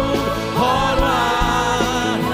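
A male lead singer and a female backing singer singing an Indonesian worship song over instrumental accompaniment, with long held notes that slide between pitches.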